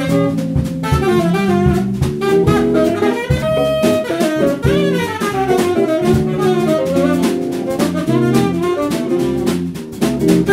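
A small jazz band playing live: saxophone and electric guitars over drums, with quick melodic runs.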